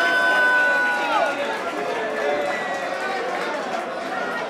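Concert audience after the set: many voices talking and calling out, with one long held high call that drops away in pitch about a second in.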